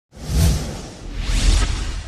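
Two whoosh sound effects from a news channel's animated logo intro, each a swell of noise with a deep low rumble, the first about half a second in and the second about a second and a half in.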